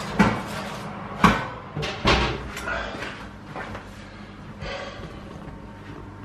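Several sharp knocks and clatters in a kitchen, the loudest about a second in, over a faint steady low hum.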